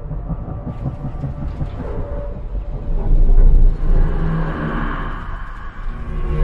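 Low, steady rumble of aircraft engines in a film sound mix, swelling louder about halfway through.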